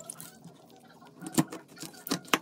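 Chef's knife cutting through a whole tuna behind the head on a cutting board: faint scraping cuts, then one sharp knock about one and a half seconds in.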